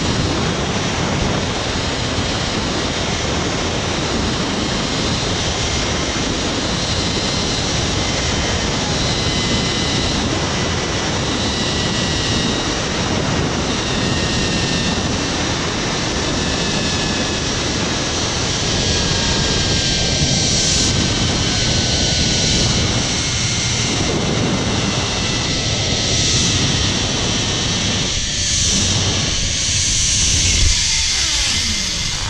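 Rider descending a long, fast zip line: steady rushing wind on the microphone, with a thin whine from the trolley's pulleys on the steel cable that slowly drops in pitch as the ride goes on.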